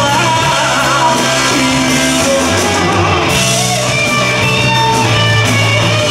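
A rock band playing live with electric guitars, bass and drum kit, in an instrumental passage without vocals.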